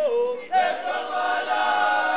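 Fulni-ô sacred chant to Mother Earth: a group of voices singing together unaccompanied. After a short pause near the start, the voices come back in on long, steady held notes.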